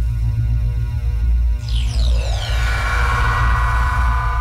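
Synthesized channel-logo intro music: a loud, deep, steady bass drone, with a falling sweep of high tones about two seconds in that settles into a held chord.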